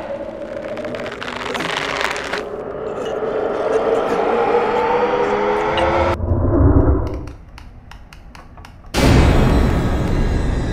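Horror-film soundtrack over the opening credits: a dense layer of voice-like sound and wavering, sliding tones, then a deep low rumble about six seconds in. A stretch of sparse clicking follows, then a loud sudden hit about nine seconds in.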